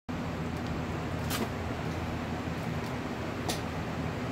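A steady low machine hum fills the room, with two brief scuffs, about a third of the way in and again near the end.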